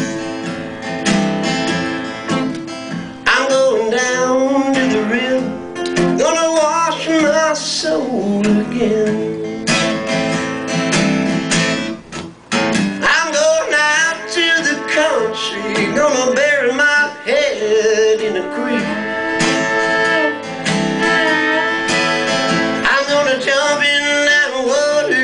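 Live country song: acoustic guitar strumming steadily under a wavering, sliding fiddle melody.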